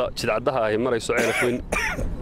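Speech only: a man talking into press microphones.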